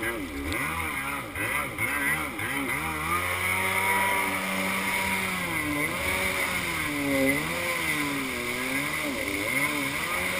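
Kawasaki X2 stand-up jet ski's two-stroke engine running under way, close to the microphone, its pitch swinging up and down repeatedly as the throttle is worked. The engine is choppy and wavering for the first few seconds, with larger rises and falls later. A steady hiss of wind and water runs underneath.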